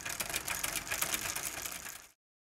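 A fast, dense run of mechanical clicks, a steady rattle like a small machine, which stops abruptly at the end.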